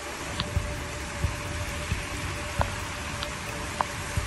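Rain and rushing muddy floodwater: a steady hiss with scattered small taps, under a faint steady tone of background music.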